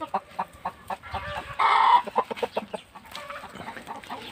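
A flock of chickens clucking in a steady scatter of short clucks, with one louder, brief call about a second and a half in.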